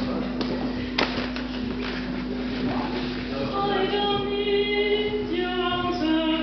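A woman begins singing unaccompanied in a classical style about three and a half seconds in, holding long notes, after a few seconds of room noise with a sharp click. A steady low hum runs underneath throughout.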